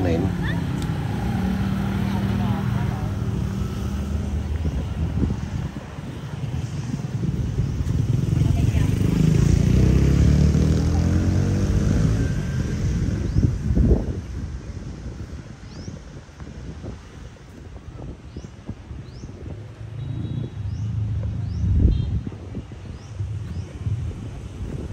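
Motorbike engines running on the road, one passing by loudly with its pitch rising and falling in the middle. Two sharp thumps, one about halfway through and one near the end.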